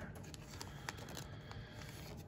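Faint handling noise, a few light ticks over a low hiss, as a thick patch card is worked into a plastic card sleeve.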